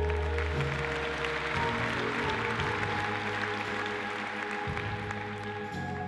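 Audience applause over sustained, organ-like backing music. The clapping swells through the middle and thins out near the end.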